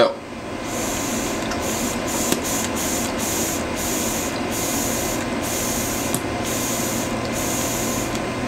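E-cigarette atomizer sizzling steadily as its coil heats freshly dripped clear VG: a constant hiss whose sharper top flickers on and off.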